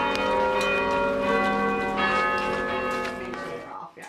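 Church bells ringing in a peal, several bells struck one after another so that overlapping ringing tones change every half second or so, dying away near the end.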